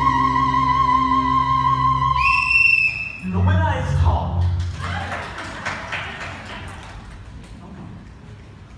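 A singer holds a long high note with vibrato over sustained low accompaniment, leaps to a higher note about two seconds in, and cuts off about three seconds in. The theatre audience then applauds and cheers, fading away over the next few seconds.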